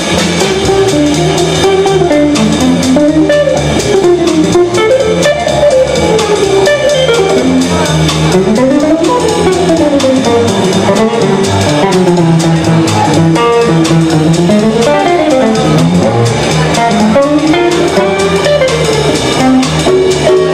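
Live jazz guitar trio: a hollow-body archtop electric guitar plays fast single-note runs that climb and fall again and again, over upright double bass and a drum kit with steady cymbals.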